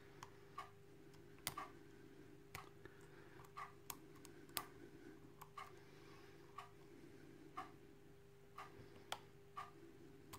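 Faint clicking of a pocket pick and tension wrench working the pins of an ISEO euro cylinder, with a few sharper clicks scattered through. Under it runs a soft regular tick about once a second and a low steady hum.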